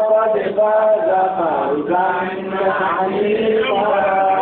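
Melodic religious chanting: a voice holding long sustained notes and sliding slowly between pitches, with a falling glide in the middle.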